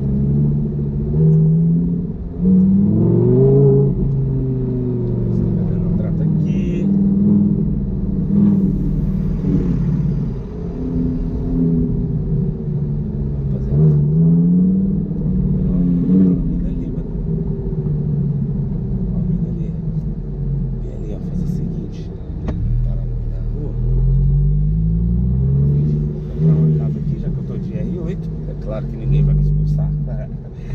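Audi R8 engine pulling the car along at low speed, its note repeatedly rising as the car speeds up and falling back as it eases off, over a low rumble.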